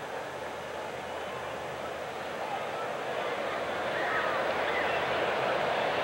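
Ballpark crowd noise: a steady hum of many voices with a few faint individual shouts, slowly swelling toward the end.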